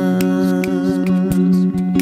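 Live-looped music: layered humming vocal harmonies held on long steady notes, over a steady beatboxed beat of about three hits a second, with electric guitar, built up on a TC-Helicon VoiceLive 3 vocal looper.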